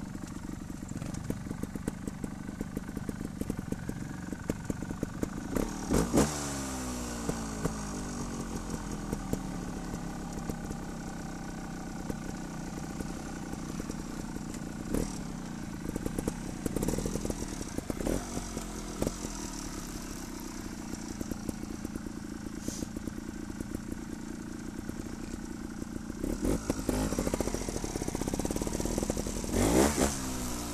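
Trials motorcycle engine running at low, steady revs as the bike is ridden slowly over the trail. There are short bursts of throttle about six seconds in, a few more around the middle, and a longer spell of throttle near the end, with the revs falling away after each burst.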